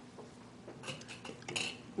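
A few light clicks and clinks of small objects being handled near a microphone, clustered in the second half, over quiet room tone.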